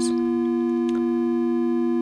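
Two Intellijel Dixie analog oscillators, quantized by a Scales module, holding a steady two-note interval: a plain, smooth synthesizer tone with no change in pitch. A faint click sounds just under a second in.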